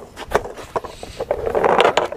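Skateboards knocking and scraping on wooden planks: a few sharp knocks, with a rougher scraping stretch near the end.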